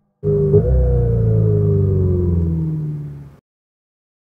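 Low synthesized drone under the brand logo: a stack of steady deep tones with one higher tone gliding slowly downward, fading out a little over three seconds in.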